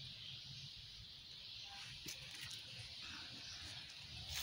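Faint outdoor background: a steady high hiss over a low rumble, with one light click about two seconds in.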